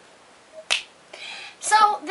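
A single sharp finger snap about three quarters of a second in, followed shortly by a woman's voice.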